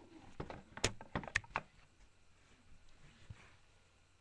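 Hard plastic model horse knocking and clicking against the wooden walls of a toy stable as it is picked up and lifted out, a quick run of sharp knocks in the first two seconds.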